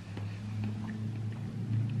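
A man chewing a bite of soft, microwaved quiche with his mouth closed: faint, scattered wet mouth clicks over a steady low hum.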